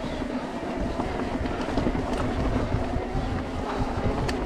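Specialized Turbo Levo e-mountain bike riding over a rocky dirt trail: a steady rumble and hum from the knobbly tyres, with light rattling and clicks from the bike over the bumps.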